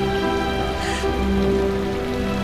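Slow, sad background music of long held notes, with steady rain falling on paving beneath it.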